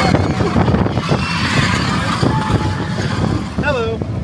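Log flume riders whooping and shouting over a steady rush of water, with one rising-and-falling whoop near the end.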